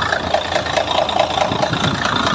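Mercedes-Benz Actros 2040 truck's diesel engine idling steadily, just refilled with about thirty litres of fresh engine oil after an oil service.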